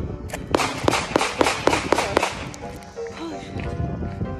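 A rapid string of about ten gunshots, some four or five a second, fired on a shooting range, then stopping about two seconds in.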